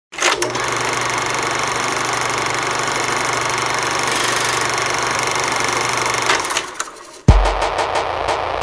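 Intro sound effect for a production logo: a dense, steady whirring noise over a low hum, fading out about six and a half seconds in. Then a sudden heavy bass hit, and a quick regular beat begins.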